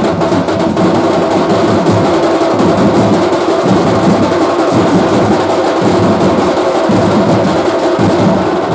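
A troupe of street drummers beating large steel-shelled drums with sticks, a loud, fast rhythm with a dense flurry of strokes.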